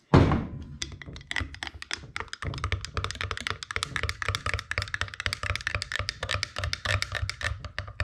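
A stirrer clicking and tapping rapidly against the inside of a glass jar of liquid dye, many light clicks a second, after one loud thunk at the start.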